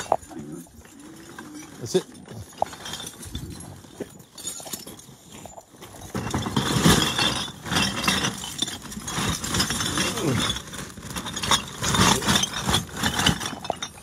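Empty glass bottles clinking and knocking together inside plastic bags, with the bags rustling, as they are carried and loaded into a car boot. The handling gets busier about halfway through.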